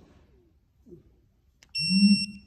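Digital torque wrench sounding its target alert on reaching its 30 ft-lb setting: a steady, loud, high beep with a low buzz under it, starting near the end after a near-silent pull.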